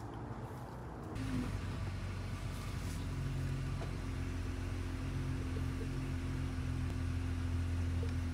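Car engine idling, heard from inside the car: a steady low hum that starts about a second in.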